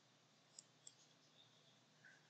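Two faint computer mouse clicks, close together a little past half a second in, over near-silent room tone.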